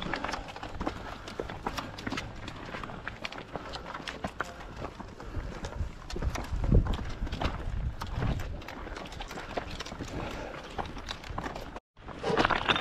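Footsteps of trail runners walking up a rocky path, with trekking poles clicking on stone in many short, irregular taps, and a louder low thump a little past halfway.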